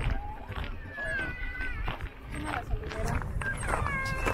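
Footsteps crunching on a gravel path at a steady walking pace, about one step every half second or more, over a steady low rumble, with a short stretch of people's voices about a second in.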